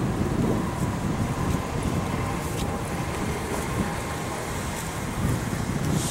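City street traffic rumble, with wind gusting on the microphone.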